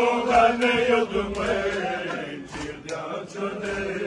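Group of men chanting a Balti noha together, a long held chanted line in the first half, then broken phrases. Short sharp slaps, chest-beating (matam), come through the chant in the second half.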